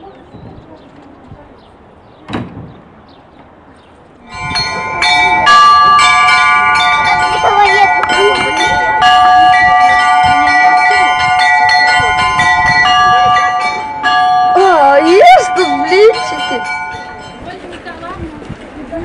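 Orthodox church bells ringing, several bells of different pitches struck over and over. The ringing starts suddenly about four seconds in and fades near the end, with voices over it.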